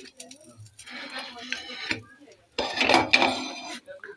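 Handling sounds of a tawa and a ceramic plate clinking and rubbing as a stuffed kulcha is lifted off the griddle onto the plate. A louder, rougher stretch lasts about a second, past the middle.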